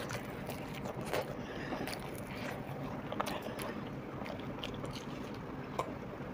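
Quiet chewing of a batter-fried chili fritter (mirchi pakoda), with a few faint clicks and crunches from the mouth.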